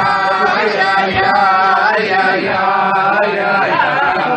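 Men singing a slow, wordless Chassidic niggun together, voices holding and sliding between long notes.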